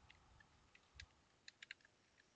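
Faint computer keyboard keystrokes: a handful of light, uneven taps, coming faster in the second second as a short word is typed.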